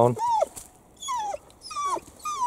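German shorthaired pointer whining: three short high whines, each rising then falling in pitch, while it is held in a down.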